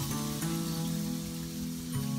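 Handheld shower head spraying water, a steady hiss, under light background music whose notes change a couple of times.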